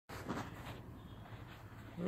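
Faint background noise with a low hum and a few soft knocks in the first second.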